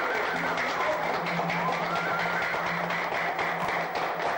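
An audience applauds over a Lebanese ensemble's continuing accompaniment, which holds a steady low note beneath a melody line that glides upward.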